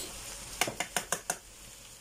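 Chicken and onion sizzling steadily in a frying pan while kitchen tongs stir the pieces, clacking against the pan about six times in quick succession around the middle.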